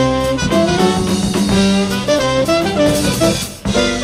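A jazz quintet of trumpet, saxophone, piano, bass and drum kit playing live, with horn lines over the drums and rhythm section. There is a brief break shortly before the end, then the band plays on.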